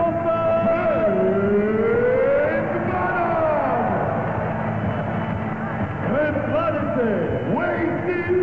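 A voice over the arena's loudspeakers making long, drawn-out calls that hold and glide up and down, echoing in the hall, with the steady noise of a large crowd underneath.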